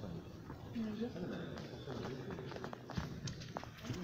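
Indistinct voices of people talking quietly in a large domed hall, with a few short sharp knocks or clicks.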